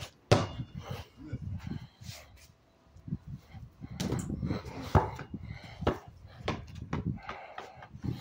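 Several sharp knocks and thumps at irregular intervals, the loudest just after the start and about five seconds in, over low rumbling handling noise.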